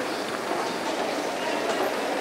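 Steady din of a busy airport terminal at a crowded moving escalator: an even mechanical rumble with a few faint ticks and no clear voices.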